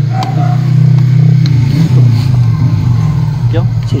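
A motor vehicle's engine passing close by, growing louder toward the middle and then easing off.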